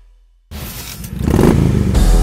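A motorcycle engine revving, starting suddenly about half a second in after a moment of near silence and building in loudness.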